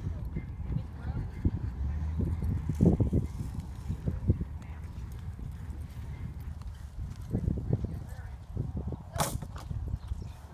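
Horse walking on soft arena dirt, its hoofbeats dull irregular thuds. About nine seconds in, one short sharp clatter stands out, the loudest single sound.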